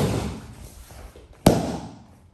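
A sharp slap ringing in a large hall about one and a half seconds in, after the fading tail of a similar slap at the very start: a hand striking the training mat, the pinned partner tapping out.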